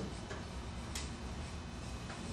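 A few light ticks of red chalk striking and stroking drawing paper on an easel, the sharpest about a second in, over a low steady room hum.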